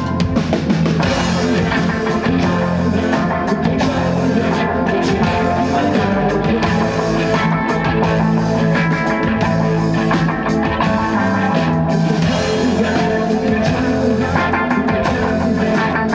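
A rock band playing live, loud and steady: electric guitars and a drum kit in a psychedelic indie rock song.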